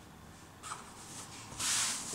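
Ankara print fabric rustling as a cut circle is opened out and smoothed flat on a cloth-covered table: a short swish about half a second in and a louder swish near the end.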